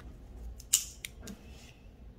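A pen and long fingernails handled against a paper sheet: a few sharp clicks and scratches, the loudest about three-quarters of a second in, then a brief faint scratch of the pen tip writing on paper.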